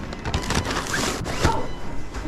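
Close handling noise: a paper takeaway bag and jacket fabric rustling and rubbing against the body-worn camera, with a few sharp knocks and clicks.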